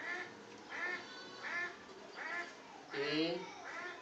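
An animal calling repeatedly: short, arched calls about one every three-quarters of a second, with a longer, fuller call about three seconds in.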